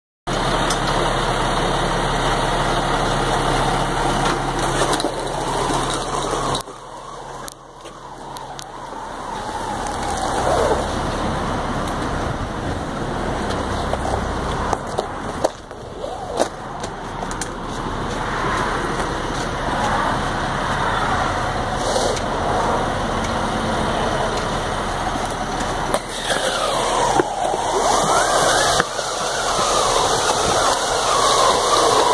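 A fire engine's engine running, with the broad scraping rustle of fire hose being pulled off the truck and dragged over asphalt and concrete. The steady low engine hum is strongest for the first several seconds and then falls away.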